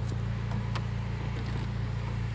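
Honda Civic Si's four-cylinder engine, fitted with a short-ram intake and an aftermarket rear muffler, running at steady low revs, heard from inside the cabin as a low, even hum.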